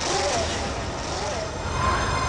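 A sudden rushing whoosh, the kind of dramatic sound effect a TV drama lays over a cut, that fades over about a second and a half, with voices mixed in; the background music comes back near the end.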